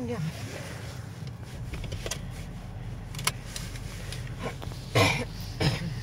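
Steady low rumble of a car heard from inside its cabin, with a sharp click a little past three seconds in and a loud, brief noisy burst about five seconds in, followed by a smaller one.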